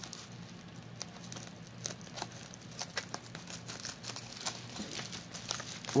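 Light, scattered crinkling and clicking of a plastic bubble pouch being handled and worked open.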